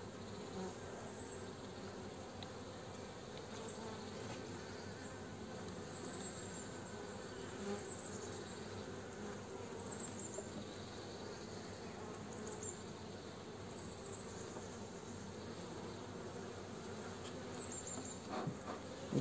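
Honeybees buzzing steadily from an open hive, a continuous low hum of the colony.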